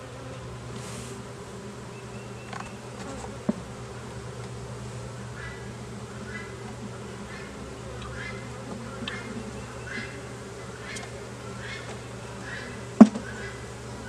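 Honeybees buzzing in a steady hum over an opened hive as frames are handled, with a small sharp knock about three and a half seconds in and a louder one near the end.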